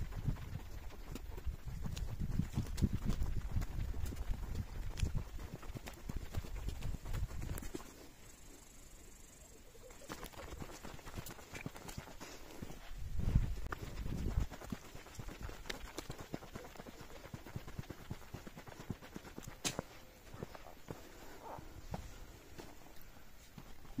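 Footsteps on a dirt path strewn with dry straw, irregular, with scattered light crunches and clicks. A low rumble runs under the first eight seconds, then drops away; it swells again briefly about thirteen seconds in.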